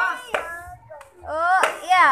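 Children's voices calling out during play, with two sharp clacks, one about a third of a second in and another a little past one and a half seconds.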